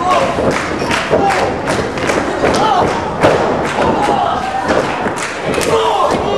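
Wrestling ring impacts: a quick series of thuds and slaps, about two to three a second, with shouting voices among them.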